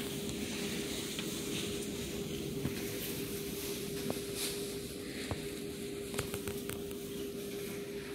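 Underground subway platform ambience: a steady hiss with a constant low hum, broken by a few short clicks and knocks about halfway through.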